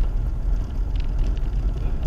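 Car driving on a wet road, heard from inside the cabin: a steady low rumble of engine and tyres, with a few faint ticks.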